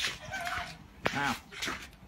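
A person's voice: a brief high call, then a short spoken word about a second in, with a sharp click just before the word.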